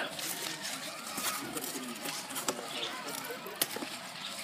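Rustling of strawberry leaves being pushed aside by hand, close to the microphone, with two sharp clicks in the second half.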